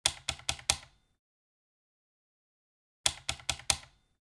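Sharp clicks in two quick runs of four, about three seconds apart, each click decaying fast.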